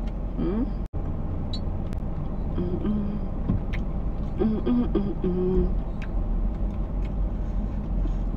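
Steady low rumble inside a car cabin, with a few short hummed notes from a woman's voice. The sound cuts out for an instant about a second in.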